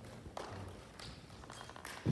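Faint footsteps and a few light taps of a man walking across a stage, over quiet hall room tone.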